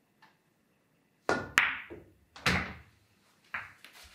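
A pool shot: the cue tip strikes the cue ball about a second in, followed by sharp ringing clicks of the pool balls colliding and several duller knocks over the next two seconds as the balls hit cushions and each other.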